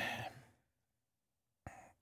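A man breathing in a pause between sentences: a fading breath just after his last words, near-total silence for about a second, then a short breath in near the end.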